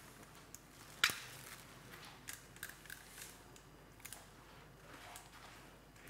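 Quiet room tone with a few faint mechanical clicks. One sharp click about a second in is the loudest.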